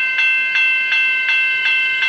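Level crossing warning bell ringing at an even rate of about three strokes a second, each stroke a bright, ringing tone.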